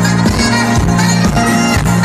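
Live pop concert music played loud through the PA system, heard from within the crowd.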